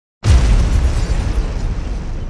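Cinematic explosion sound effect for a title reveal: a sudden deep boom a fraction of a second in, followed by a long tail that slowly dies away.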